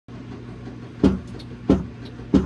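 A steady low electrical hum from the amplified keyboard setup, with two sharp percussive knocks about two-thirds of a second apart in the second half: the first beats of the song's tempo, just before the playing comes in.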